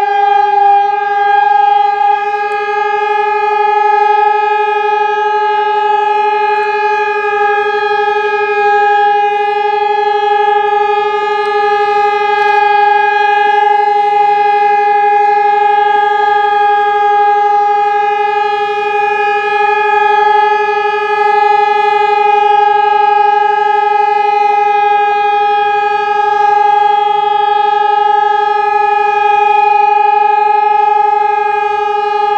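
Civil defence siren sounding one loud, steady tone that does not rise or fall. It is the continuous remembrance signal for the Warsaw Uprising anniversary.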